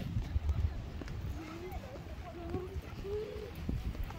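Horse walking on sand, its hoofbeats coming as dull, irregular low thuds, with faint voices of other riders.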